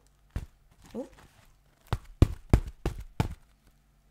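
Knuckles knocking about half a dozen times in quick succession on a vintage velvet half hat, like knocking on a door; the hat is so stiff because of its very stiff lining.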